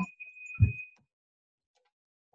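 A knife cutting through soft boiled potatoes in a foil tray: one short, dull thud about half a second in. A faint steady high tone rings underneath and stops about a second in.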